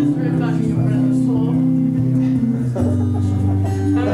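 Acoustic-electric guitar playing sustained chords that change about once a second, with the bass moving to a lower note near three seconds in.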